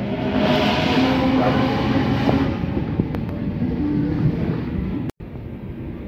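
Sydney Trains Waratah (A set) double-deck electric train pulling out, a rumble of wheels with steady motor tones, loudest in the first couple of seconds. The sound cuts out briefly about five seconds in and is quieter after.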